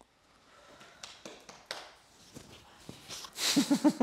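A few soft, breathy exhales after a strenuous set of leg exercise, then a burst of laughter near the end.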